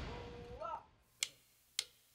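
Two sharp, evenly spaced clicks about half a second apart, in the second half: a drummer's drumstick count-in before the band comes in. Before them, an intro swoosh fades out and there is a brief voice-like sound.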